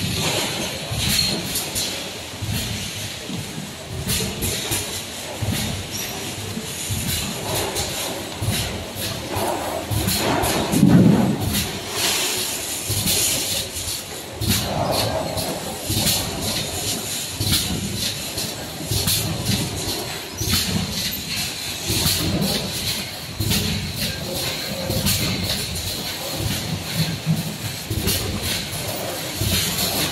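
Automatic bottle filling line running: a steady mechanical clatter with frequent irregular clicks and knocks as bottles move along the conveyor and through the machine, over a faint steady high whine.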